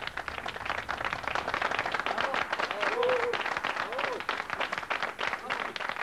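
Audience applauding at the close of a card trick, dense clapping throughout, with a couple of brief voices calling out through it about three and four seconds in.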